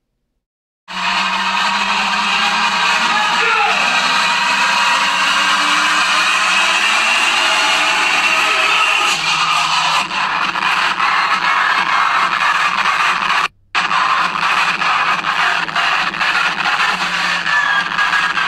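A huge concert crowd cheering and shouting over loud DJ music. It starts about a second in and drops out for a moment past the middle.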